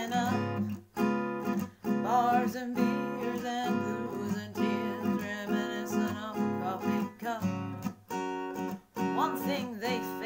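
Acoustic guitar strummed in chords while a woman sings a slow country love song.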